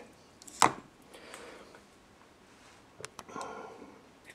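A single sharp knock a little over half a second in as tools are handled, followed by faint rattling and a few light clicks near the end.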